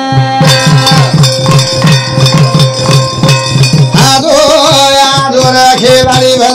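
Live Banjara devotional folk music: a drum keeps a quick steady beat under held instrument notes and jingling percussion, and a voice comes in singing about four seconds in.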